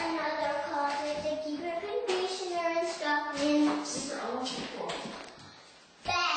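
A young child singing, with a few notes held briefly.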